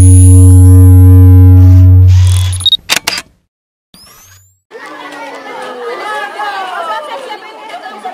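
Intro sound effect: a loud low drone with layered tones for about two and a half seconds, then a few sharp camera-shutter clicks. After a short silence, outdoor crowd chatter and voices start about five seconds in.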